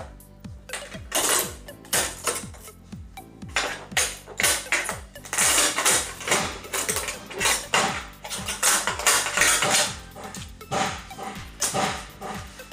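Background music with a steady beat, over irregular crackling and clattering from LED backlight strips being pulled off a TV's sheet-metal backplate.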